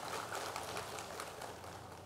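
Audience applauding, the clapping fading away.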